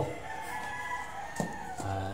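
A rooster crowing: one long drawn-out crow, fainter than the nearby talk. A short click about one and a half seconds in.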